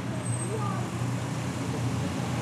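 Engines of a slow-moving motorcade with a police motorcycle escort, a steady low hum, with faint voices of onlookers.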